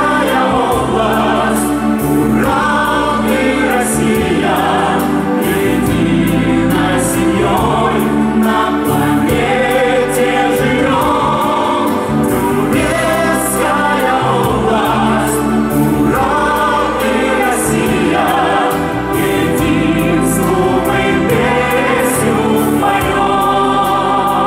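A song sung with instrumental backing, held notes over a steady accompaniment with a regular beat.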